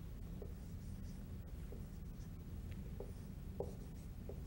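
Dry-erase marker writing on a whiteboard: a few short, faint squeaks and taps as the strokes of characters are drawn, the strongest near the end, over a low steady room hum.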